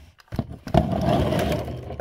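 Plastic bubble-wrap packing rustling and crinkling as it is handled in a cardboard box. It starts about a third of a second in and runs loud and crackly from then on.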